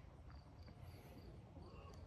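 Near silence with faint, evenly spaced high chirps of a cricket, a few a second.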